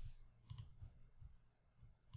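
Near silence, with a faint single click about half a second in and softer ticks later: a press at the computer, submitting a search.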